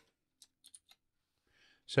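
A few faint computer keyboard keystrokes, short separate clicks within the first second.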